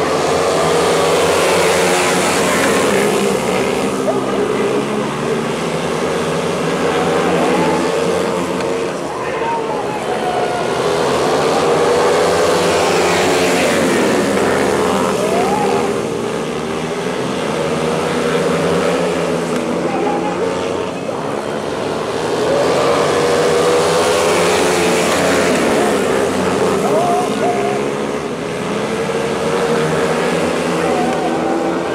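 Speedway motorcycles racing on a dirt oval, their single-cylinder engines rising and falling in pitch as the riders rev through the turns. The sound swells each time the pack comes past, about every eleven seconds.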